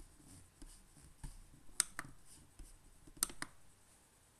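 Quiet room tone with about five faint, sharp clicks, two close pairs among them, near the middle and about three seconds in.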